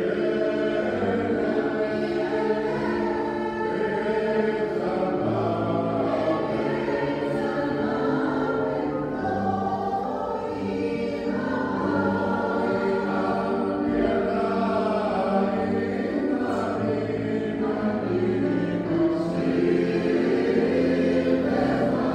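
Mixed choir of men's and women's voices singing held chords.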